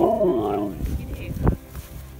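A husky-malamute cross gives a short vocal call that rises and falls in pitch for under a second. A sharp knock follows about one and a half seconds in.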